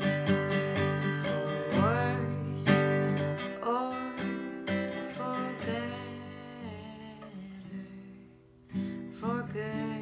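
Acoustic guitar being strummed and picked with a woman singing along. The playing dies down about eight seconds in, then a fresh strum comes in.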